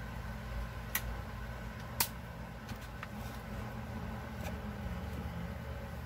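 Steady low background hum, with a few short sharp clicks, the clearest about one and two seconds in.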